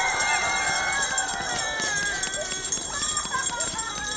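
A crowd of children shouting and squealing together, several high voices overlapping, with a steady high ringing tone held above them.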